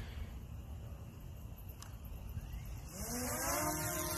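A faint low rumble, then about three seconds in the DJI Mini SE quadcopter's motors and Master Airscrew propellers spin up, a whine rising in pitch with a hiss as the drone lifts off. This is the second takeoff attempt, with the propellers now matched to the correct A and B arms.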